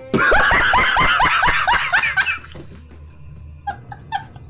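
A man's high-pitched laughter: a rapid run of falling 'hee' pulses, about six a second, for about two and a half seconds, then a few shorter giggles near the end.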